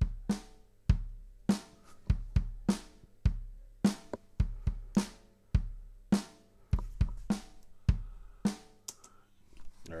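Programmed drum-kit beat from the Groove Agent SE virtual drum instrument, played back at about 100 beats a minute. Bass drum, snare and cymbal hits fall in a steady pattern.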